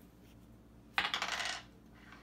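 A small hard object dropping and clattering with a brief ringing, about a second in.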